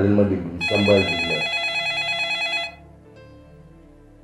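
A phone ringing: one steady electronic ring tone lasting about two seconds, starting under a man's voice and cutting off suddenly, followed by faint background music.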